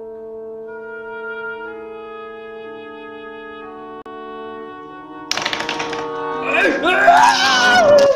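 Music of long held notes, like slow horn or woodwind chords, changing pitch a note at a time. About five seconds in, a sudden burst of noise comes in, then loud, excited voices over the music.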